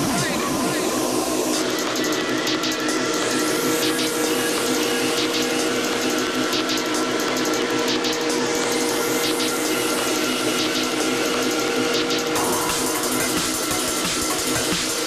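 Drum and bass track in a breakdown: held synth notes over ticking hi-hats and whooshing filter sweeps, with no deep bass. About twelve seconds in the high end opens up as the tune builds back towards the drop.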